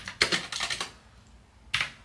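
Typing on a computer keyboard: a quick run of keystrokes in the first second, then a pause and one more keystroke near the end.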